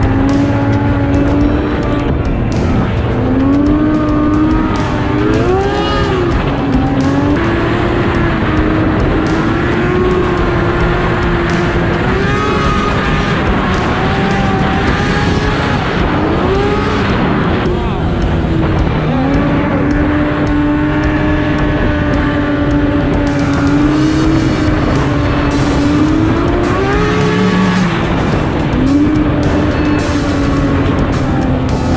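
Yamaha snowmobile engine running at trail speed, its pitch dropping and climbing again several times as the throttle is eased off and opened up, over a steady rush of noise.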